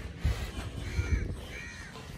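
Two short, harsh bird calls in quick succession, about a second in, heard over a low rumble.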